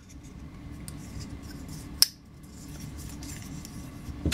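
Koenig Arius folding knife being handled and folded shut, with one sharp metallic click about halfway through as the blade snaps closed.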